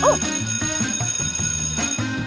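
A bell rings with a steady, shimmering high tone for about two seconds, then cuts off suddenly, over background music.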